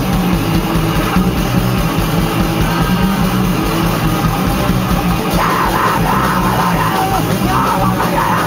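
Rock band playing live at rehearsal: loud, dense distorted electric guitars and bass, played without a break.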